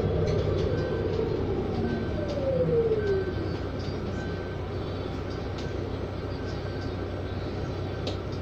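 Cabin sound of a Proterra BE40 battery-electric bus: the electric drive's whine falls steadily in pitch over about three seconds as the bus slows to a stop, leaving a steady low hum. A faint short high tone recurs about once a second.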